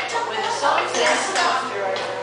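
Children's voices with light clinking and clattering in a classroom while the dance music is stopped.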